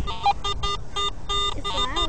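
A metal detector beeping: rapid, repeated short electronic tones of one pitch, about four a second, the sign that it is sounding off over a buried metal target.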